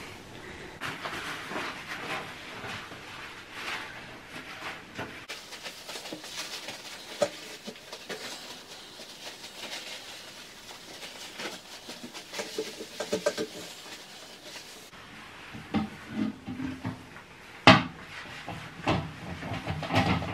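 Quiet handling sounds of a toilet being wiped down with kitchen towel in rubber gloves: scattered rubbing, rustling and small knocks on the ceramic. A steady hiss runs through the middle, and a single sharp knock comes near the end.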